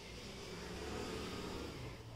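Faint, steady low rumble of background noise with no clear single source.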